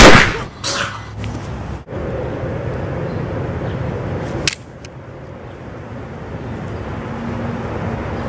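A loud gunshot sound effect right at the start, followed by a second, weaker blast a moment later. A sharp click comes about four and a half seconds in, over steady outdoor background noise.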